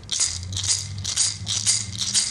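A hand rattle shaken in a steady beat, about three shakes a second, as the lead-in to a sung song.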